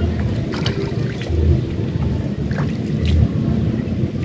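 Wind rumbling on the microphone in gusts, swelling about every second and a half, with a few short clicks.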